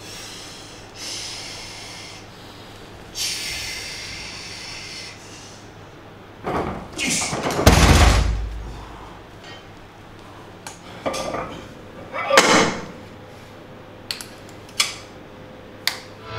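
Sharp, forceful breaths as a lifter braces, then a barbell loaded to 260 kg with Eleiko plates thudding down onto the floor, once heavily about eight seconds in with a deep rumble after it and again about four seconds later. A few light clicks of the bar and plates follow near the end.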